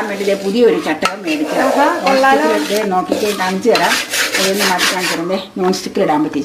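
Wooden spatula stirring dry rice flour in an aluminium pot, scraping against the pot's sides and bottom as the flour is roasted, with a woman talking over it.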